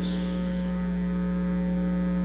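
Steady electrical mains hum on the microphone feed: one unchanging buzzy tone with a stack of overtones above it, holding at an even level.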